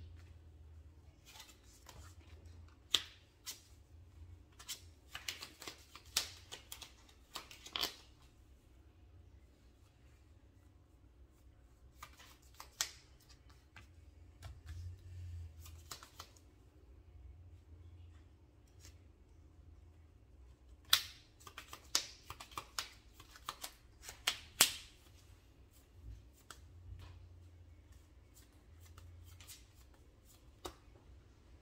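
Sleeved trading cards being shuffled, handled and laid down on a cloth playmat: quiet, intermittent sharp clicks and card slaps, bunched in a few busy spells.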